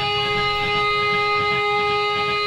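Amplified electric guitars ringing on steady sustained tones, with little drumming underneath, during a loud live hardcore set.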